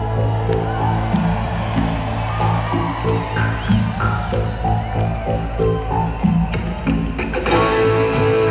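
Live rock band playing: an electric guitar picks single notes and bends them over a held low bass note, and the full band comes in louder about seven and a half seconds in.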